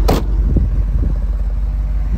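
2010 Jeep Grand Cherokee SRT8's 6.1-litre Hemi V8 idling, a steady low rumble from its dual exhaust, with a brief thump at the very start.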